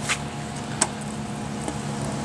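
Black pepper shaker shaken over a raw steak: two short, gritty rattles, one at the start and one a little under a second in, over a steady low hum.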